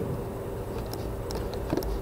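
A steady low hum of background noise, with a few faint clicks near the end.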